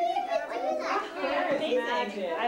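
Several young children talking and calling out over one another in a lively jumble of voices.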